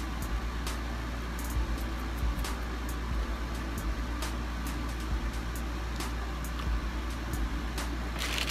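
Steady low hum and hiss of room noise, with faint scattered clicks throughout.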